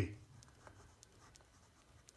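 Ballpoint pen writing on paper: faint, scattered scratching strokes as words are written out.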